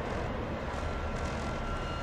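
Steady, rumbling noise drone with heavy low end, a dark-ambient sound texture from a martial industrial recording. A faint held tone joins it about halfway through.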